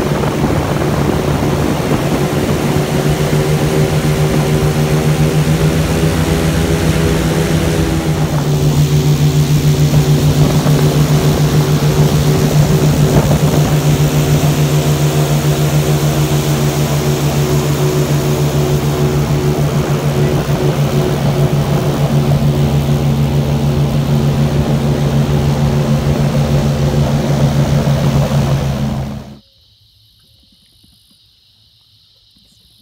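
Airboat's engine and large air propeller running steadily, a loud drone that gets louder about eight seconds in and cuts off abruptly just before the end.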